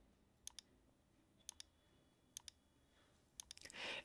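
Faint computer mouse clicks over near silence, about four of them, roughly a second apart, several in quick double clicks.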